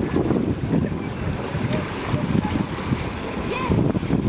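Wind buffeting the microphone in uneven gusts, over the splashing of a swimmer doing front crawl in a pool.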